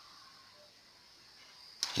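Quiet room tone with faint hiss through a pause. Near the end there is a sharp click, and a man's voice starts speaking.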